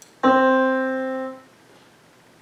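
A faint click, then a single piano note, middle C, sounding about a second and fading out. It is the exercise playing the answer C, the ledger-line note below the treble staff, when that answer is clicked.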